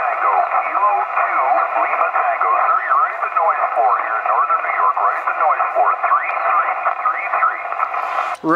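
Amateur radio voice signals from an HF transceiver's speaker: other stations answering a CQ call in single-sideband. The voices are thin and narrow-band, with a steady hiss of static and several voices overlapping.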